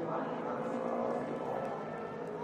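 Ducati superbike engine running at low revs as the bike rolls slowly along the track, with a voice over it.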